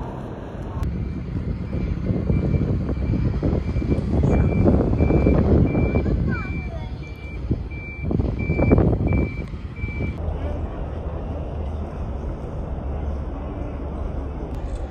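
A vehicle's reversing alarm beeping steadily, about twice a second, for some nine seconds before it stops. Under it, loud outdoor rushing noise swells twice.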